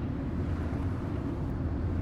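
Steady low rumble of road and engine noise inside a moving Chevrolet car's cabin.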